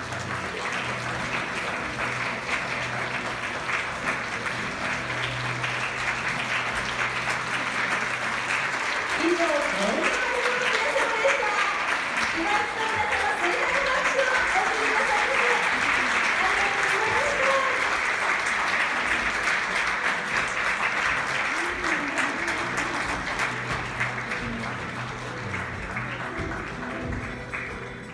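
Audience applause that goes on throughout and swells louder in the middle, with voices calling out within it. Music plays underneath.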